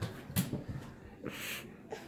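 Faint sounds of a child eating dried seaweed: a small mouth click about half a second in, then a short breath out through the nose just after the middle.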